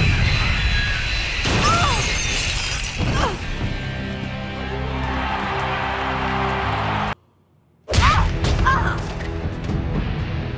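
Cartoon fight soundtrack: dramatic score under crashing, shattering impacts. The sound cuts out to near silence for under a second just after seven seconds in, then the score returns with another crash.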